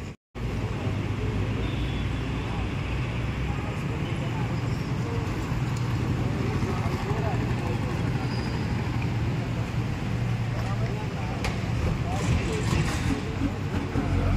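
Steady road traffic noise with a low engine hum from vehicles running close by, under indistinct voices talking. The sound drops out completely for a moment just at the start.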